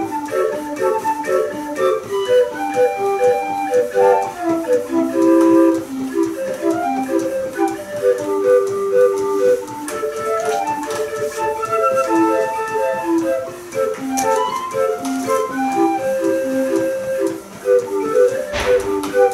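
Self-built 20-note Busker street organ, a hand-cranked mechanical pipe organ reading punched paper music, playing a tune of short, detached pipe notes over a repeating accompaniment.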